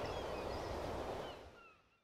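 Sea ambience of a steady surf-and-wind wash, with a few faint, short, falling bird cries. It fades out about one and a half seconds in.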